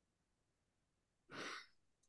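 Near silence, with one short, faint breath about one and a half seconds in.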